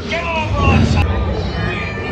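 Dark-ride show soundtrack: recorded voices calling out in cries that glide up and down, over a steady low rumble and faint music.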